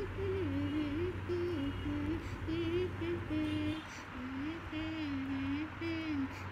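A young girl humming a wandering tune to herself in held notes that step up and down, over a steady low hum.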